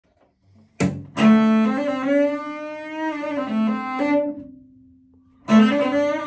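Electric cello bowed: a blues phrase of several sustained notes with sliding pitch between them. It opens with a short sharp attack, fades out about four seconds in, and a new phrase begins near the end.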